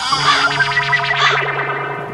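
A short edited-in music sting, distorted and echoing, with held notes that start to fade near the end.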